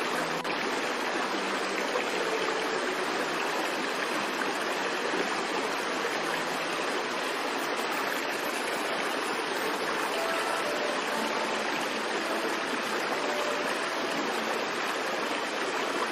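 Rushing river water and waterfalls: a steady, even rush of white water that holds at one level throughout.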